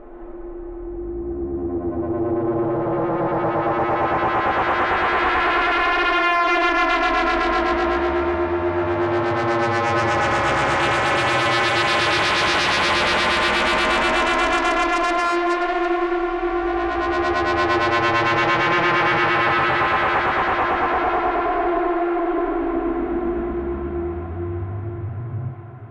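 Eurorack modular synthesizer playing an FM drone patch: two oscillators through a wavefolder and low-pass filter, a third oscillator frequency-modulating the first, and LFOs slowly moving the modulator, folder and filter. It makes deep shifting sounds, a steady tone with sweeping overtones that brighten and dull in slow waves. It fades in over the first two seconds.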